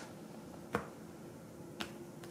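Two short, sharp clicks of oracle cards being laid down on a cloth-covered table, one under a second in and one near the end, over a faint steady hum.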